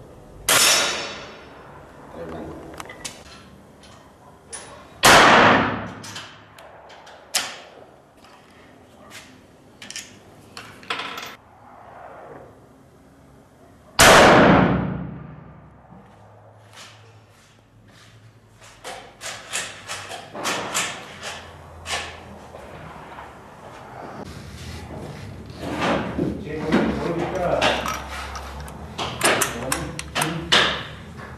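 Rifle shots on a range: loud sharp reports about half a second in, at about five seconds and at about fourteen seconds, each with a long echoing decay, and smaller cracks between them. In the last third there is a run of quick metallic clicks and clanks.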